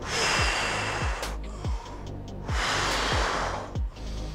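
A man breathing heavily, winded from exercise: two long, noisy breaths, the second about two and a half seconds in. Background music with a steady beat runs underneath.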